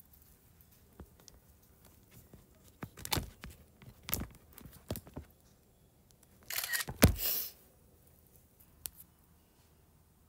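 Quiet handling noise: scattered soft taps and clicks of a stylus on a tablet screen, with a short rustle and a sharper knock about seven seconds in.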